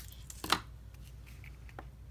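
Tabletop handling sounds of paper crafting: a sharp click at the start, a louder one about half a second later, and a faint tap near the end, as small scissors and a die-cut paper strip are handled and set down on the craft table.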